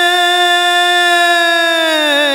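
A male cantor's voice holding one long sung note in a Middle Eastern style, the pitch sinking slightly near the end.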